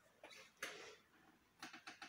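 Near silence, with a brief soft rustle a little over half a second in and a few faint clicks near the end.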